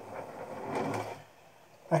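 A brush scrubbing wet clay slip onto the scored rim of a clay pot, a soft scratchy rubbing that lasts about a second and then stops.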